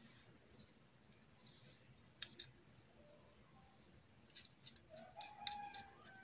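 Near silence with a few faint clicks of circuit boards and small parts being handled. Near the end a rooster starts a faint, drawn-out crow.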